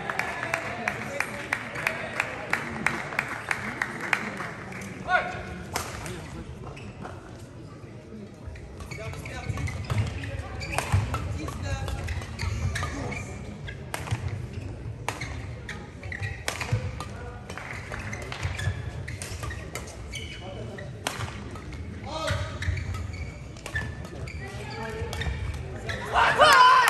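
Badminton rally in a large hall: sharp strikes of rackets on the shuttlecock, roughly one a second, with thuds of footwork on the court and voices in the background.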